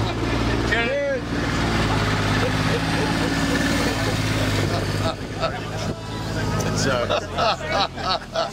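Small vehicle engine, likely the survey quad bike, idling with a steady low hum, fading near the end, with voices over it.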